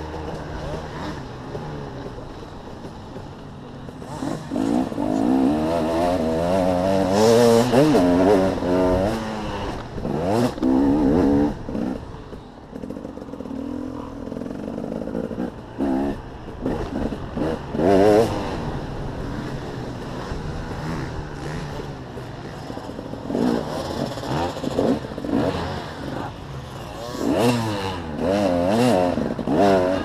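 Dirt bike engine heard from on board as it is ridden hard, its pitch rising and falling again and again as the throttle is opened and closed and gears change, loudest in the first half and again about two-thirds of the way through.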